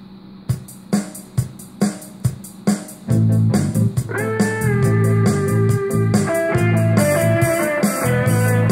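Playback of a home-made multitrack backing track: a drum beat alone at first, about two hits a second, then a bass line comes in about three seconds in and electric guitar about a second later. The guitar sits a little low in the mix and tends to disappear.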